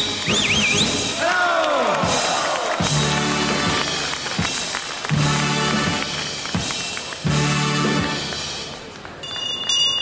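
Carnival session band playing lively music with pitch glides and rhythmic chords over hall crowd noise; near the end the session president's hand bell rings.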